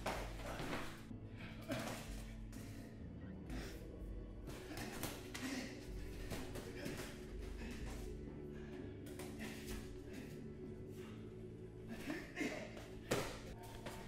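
Quiet background music with held tones, over scattered, irregular thuds from sparring: gloved strikes, kicks and footwork on the mats.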